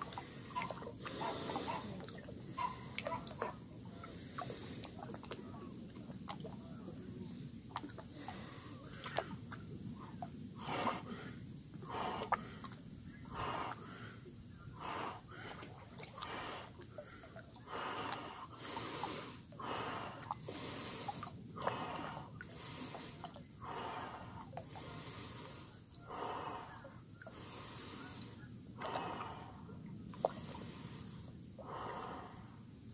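A man breathing heavily in repeated breaths, about one every second or two, louder from about ten seconds in, while immersed to the shoulders in 1 °C river water: breathing through the cold of the water.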